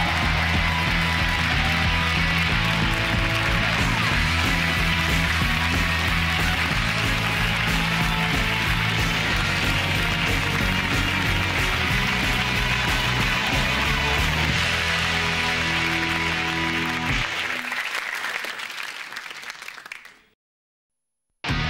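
Show theme music with a steady bass beat over studio audience applause. The music stops about three seconds before the end and the applause fades away.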